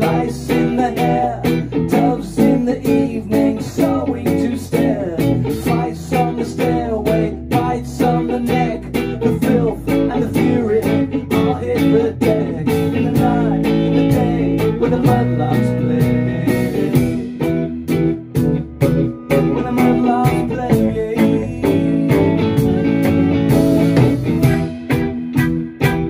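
Live band music: electric guitar, bass guitar and drums playing an instrumental passage between sung verses.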